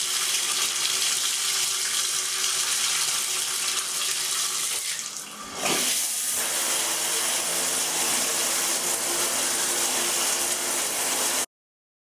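Bathtub faucet running, water pouring steadily over a hand into the tub. About halfway through it dips briefly and gives way to a shower head spraying steadily against a tiled wall. The water sound cuts off suddenly just before the end.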